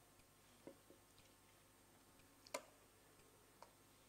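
Near silence with a few faint isolated clicks and taps, the loudest about two and a half seconds in.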